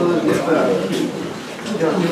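Indistinct chatter of several people's voices talking at once.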